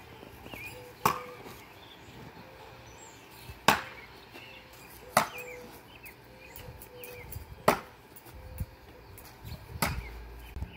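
Steel throwing stars striking a wooden log-slice target: five sharp thunks, a couple of seconds apart.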